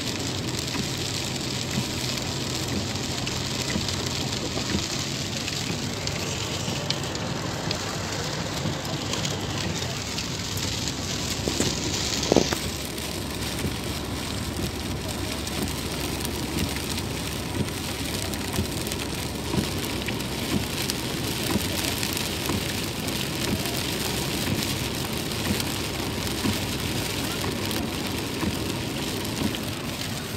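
Heavy rain falling on a moving car's roof and windscreen, heard from inside the cabin as a steady wash of noise along with tyre noise on the wet road. A single sharp click comes about twelve seconds in.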